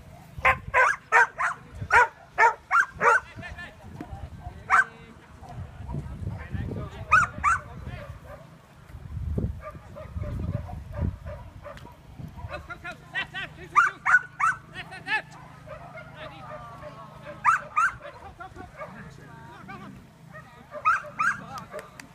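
A dog barking excitedly in quick bursts while running an agility course: a fast string of about seven barks in the first few seconds, then shorter volleys of two or three barks every few seconds.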